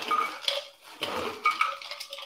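Ice cubes dropping into a metal cocktail shaker tin: a run of clinks and rattles, with short metallic rings near the start and again about a second and a half in.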